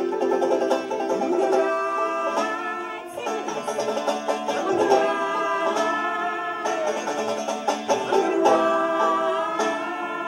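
Banjo picking, with a fiddle and two voices singing without clear words, at the close of a live folk song.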